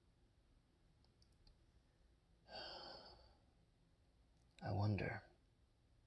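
Near silence broken by the narrator's voice: one audible breath, like a sigh, about two and a half seconds in, then a single short spoken word near the end.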